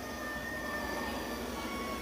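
Public-address system's faint feedback ringing: a few steady high tones held over a low electrical hum.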